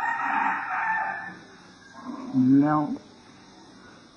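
A rooster crows once, a raspy call lasting about a second and a half, followed by a man saying a single word.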